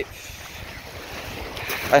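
Wind blowing across a phone's microphone: an uneven low rumble over a steady rush of noise.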